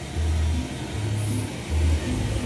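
A low, uneven rumble from an electric blower that keeps an inflatable bounce house up.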